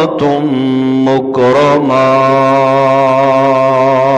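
A man's voice chanting Arabic praise from the opening of a Friday sermon in long, drawn-out melodic notes, with a brief break and a short ornamented phrase about a second in, then one long steady held note.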